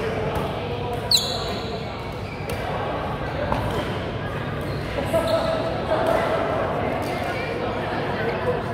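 Badminton play echoing in a large indoor sports hall: rackets striking the shuttlecock, the loudest a sharp crack about a second in, with short squeaks from shoes on the court floor and background chatter from players on other courts.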